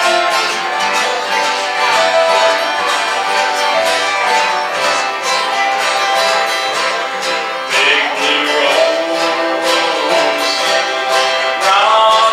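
Live acoustic string band playing a slow dance tune, with a mandolin among the instruments.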